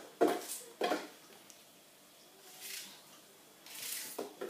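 Hot peppers and an onion being put by hand into a kitchen container: two sharp knocks about half a second apart within the first second, then faint handling rustles.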